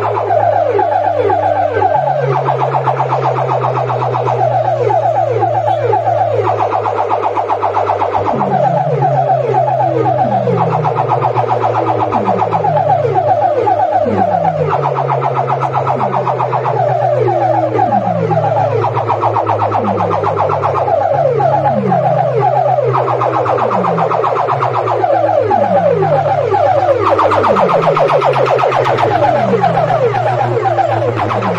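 Electronic DJ sound effects played loudly through a street sound system's stacked horn loudspeakers: a siren-like pattern of falling pitch sweeps repeating about every second and a half over a steady low drone.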